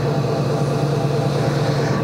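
Electric potter's wheel running, a steady motor hum, as it turns a leather-hard clay bowl while a chamois is run over the rim. The hum cuts off suddenly near the end.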